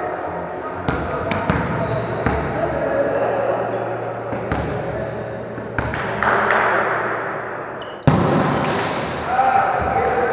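A volleyball being struck and bouncing on a gym's wooden floor: several sharp smacks that echo in the hall, the loudest a sudden hit about eight seconds in. Players' voices chatter indistinctly throughout.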